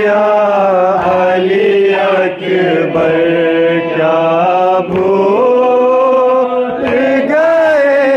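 Men's voices chanting a noha, a Shia lament, in a slow wavering melody without instruments, sung into a microphone.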